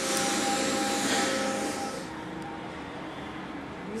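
Steady mechanical whir of running lab equipment, with a faint steady whine in it; it drops to a quieter level about halfway through.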